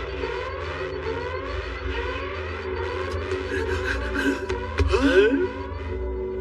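Animated-film soundtrack: music under a rapid series of rising, siren-like sweeps, one after another, with a cluster of sliding glides about five seconds in.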